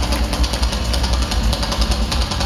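Live heavy metal played on amplified cellos and a drum kit, the drums hitting in a fast, dense, even pattern over a heavy low end.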